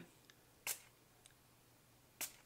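A single short spritz from a non-aerosol pump-spray bottle of glue accelerator, about two thirds of a second in; otherwise near silence.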